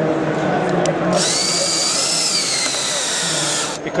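Cordless drill driving a fine-thread wood screw into a knot in the wood without a pilot hole. Its motor whines steadily for about two and a half seconds from about a second in, the pitch rising a little and dipping before it stops.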